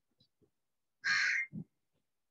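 A single loud, harsh call lasting about half a second, about a second in, followed at once by a short low thump.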